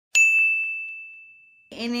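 A single ding sound effect marking a transition: one high bell-like tone struck just after the start, ringing and fading away over about a second and a half.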